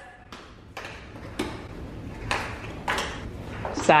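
A gift box being handled and opened: a few irregular soft clicks and taps from the box and its packaging.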